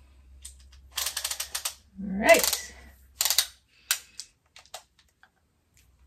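Small retractable body tape measure being handled and pulled out, giving a quick run of sharp clicks followed by a few more scattered clicks. In the middle comes a short rising vocal sound, the loudest thing heard.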